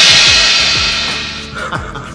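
Crash cymbal of a rimshot-style drum sting ringing out after a joke's punchline, fading away over about a second and a half.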